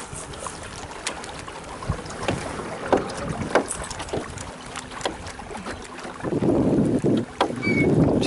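Scattered light clicks and knocks from handling a rod and baitcasting reel aboard a small fishing boat. About three-quarters of the way in, a loud rush of wind on the microphone takes over.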